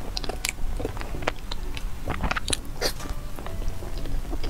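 Close-miked chewing of a soft, sticky custard-filled snow-skin mochi (nai huang xue mei niang), with many irregular wet mouth clicks and smacks.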